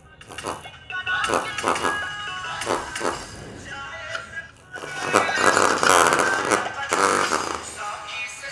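A song played through a small woofer driven by a mini audio amplifier, getting louder as the volume is turned up, first about a second in and again about five seconds in.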